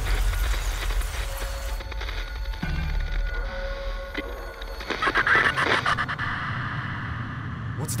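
Dark horror-trailer score: a deep rumbling drone with held tones. A high hiss drops away about two seconds in, and a louder swell of noise rises around five seconds.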